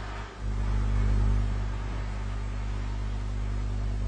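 Newman electromagnetic motor running with a steady low hum; it rises about half a second in, is loudest around a second in, then holds even.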